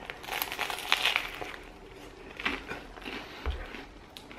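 Biting into and chewing a crusty part-baked bread roll close to the microphone: irregular crackly crunching of the crust, busiest about a second in, with a few smaller crunches later.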